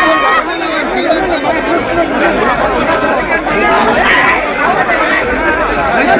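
A packed crowd talking and calling out at once, many voices overlapping into a continuous loud babble.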